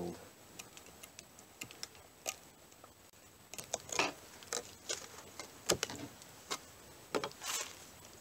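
Scattered small, sharp clicks and ticks of metal pliers gripping and prying a spent bullet out of a pine 2x4, with light knocks of the boards being handled. The clicks grow busier through the second half.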